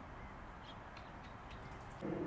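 A few faint, brief bird calls over a low, steady outdoor background rumble.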